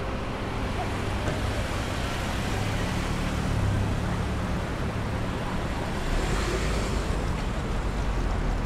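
Steady city street traffic at an intersection: car engines and tyres, with a low engine hum that swells a few seconds in and a deeper rumble near the end.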